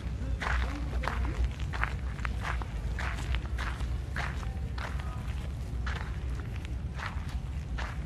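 Footsteps of a person walking at a steady pace across dry ground and leaf litter, a step roughly every half second or so, over a steady low rumble.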